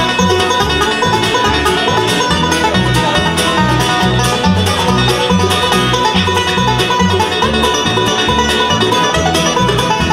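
Bluegrass band playing an instrumental passage: banjo, fiddle, mandolin and acoustic guitar over an upright bass that plays steady low notes about twice a second.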